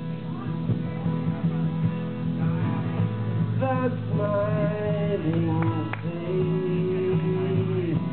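A small band playing on two acoustic guitars and an electric bass, a steady low bass line under long held melody notes that slide between pitches.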